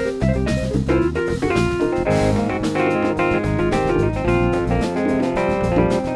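Live instrumental band music: a stage keyboard playing chords and runs over electric bass and a drum kit, with a steady beat.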